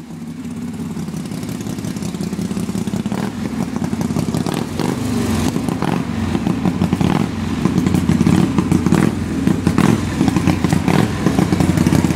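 1966 Harley-Davidson Panshovel 1200 V-twin engine running and growing steadily louder, with scattered clicks and clatter.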